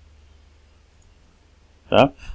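Near silence with a low steady hum, broken by one faint computer-mouse click about a second in; a man's voice starts just at the end.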